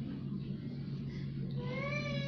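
A steady low hum, then about one and a half seconds in, a high-pitched, drawn-out cry starts and holds a steady pitch.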